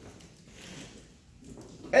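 A pause in a man's speech: faint room tone with a faint, indistinct sound about half a second in, then his voice starting again right at the end.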